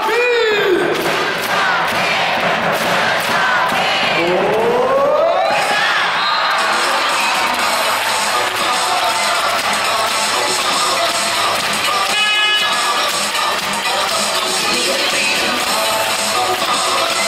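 Arena crowd cheering and shouting over music during a volleyball serve and rally. About four to six seconds in, one long rising crowd shout builds into continuous cheering.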